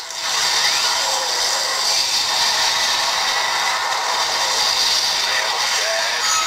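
Smartphone game audio from the Doogee F5's loudspeaker: a zombie shooter's dense, steady mix of in-game effects and ambience, thin and with little bass, starting suddenly just after the start.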